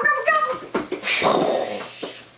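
A child's high-pitched, wavering wordless vocal sound, then a rough, noisy sound lasting about a second.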